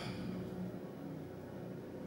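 A quiet pause: faint hall room tone with a soft, steady low hum underneath.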